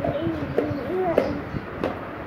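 Pigeon cooing, a low call that wavers in pitch, with a few sharp clicks.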